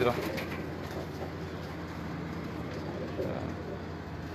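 Domestic pigeons cooing faintly in the background, with a low call standing out about three seconds in.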